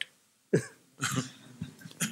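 A person's cough about half a second in, followed by a quieter throat-clearing sound.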